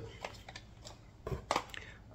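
Light plastic clicks and taps of cassette tape cases being handled, with two sharper clicks about one and a half seconds in.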